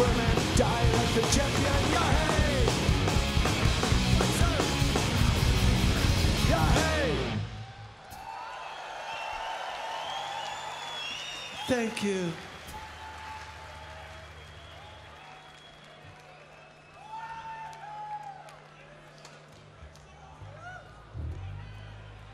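Punk rock band playing live, with distorted electric guitars, drums and shouted singing, until the song stops about seven seconds in. Then a festival crowd cheers and whistles, over a steady low hum from the stage amplifiers.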